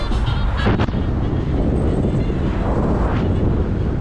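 A car driving along a road, with steady engine and road noise and wind on the microphone.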